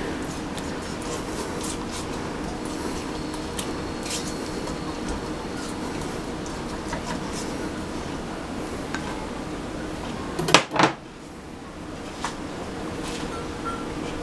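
Melted butter sizzling in a heated electric skillet, a steady hiss with small crackles, while a silicone spatula stirs it. Two quick knocks come about ten and a half seconds in.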